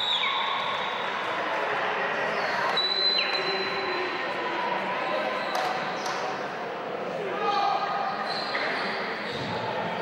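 Basketball being dribbled on a hardwood court in a large hall, with players' and bench voices calling out over the steady hall noise.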